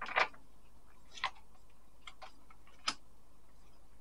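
Tarot cards being handled and shuffled on a table: a few short, sharp card snaps and taps spaced about a second apart, the loudest just at the start.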